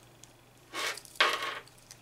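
Metal chain bracelets jangling on a moving wrist, twice: a short jingle about three-quarters of a second in, then a sharper, louder one just after a second in.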